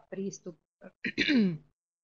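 A woman clearing her throat once, loudly, about a second in, with a sharply falling pitch. Short fragments of her speech come before it.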